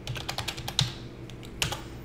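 Computer keyboard being typed on: a quick run of key clicks, with one louder key press near the end.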